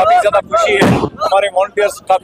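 A single loud bang of a firecracker a little under a second in, cutting through men talking.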